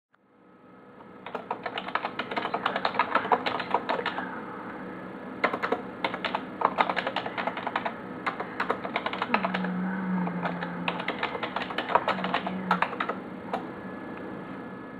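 Typing on a computer keyboard: quick runs of key clicks in three bursts with short pauses between. A low steady hum comes in twice during the last burst.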